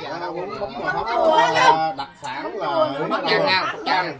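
Speech only: several people chatting, voices running on throughout.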